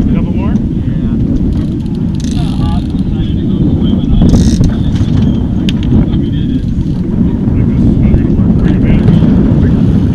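Steady low rumble of wind buffeting the camera's microphone on an open boat, with two short shouted voices in the first three seconds.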